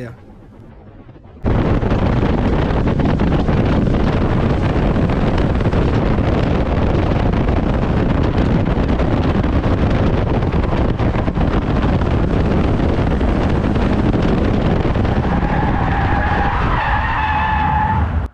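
Onboard sound of a stock car racing: loud, dense engine and road noise that starts abruptly a second or so in. Near the end a tyre squeal sets in as the car spins out.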